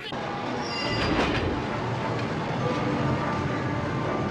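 Subway train pulling out and running past: a steady rumble that grows louder about a second in, with a brief high squeal near the start.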